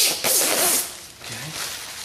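Protective plastic film being peeled off an acrylic (plexiglass) sheet: a tearing hiss in the first second, then fainter rustling.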